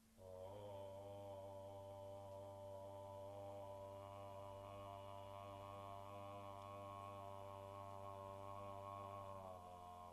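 A low, sustained musical drone: one chord held steady, entering just after the start and easing slightly near the end.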